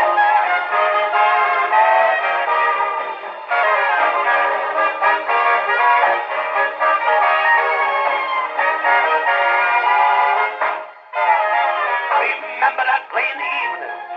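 Orchestra playing an instrumental chorus from a 1950 78 rpm record on a hand-cranked acoustic phonograph. The sound is narrow and midrange-heavy, with no deep bass. It dips briefly about eleven seconds in.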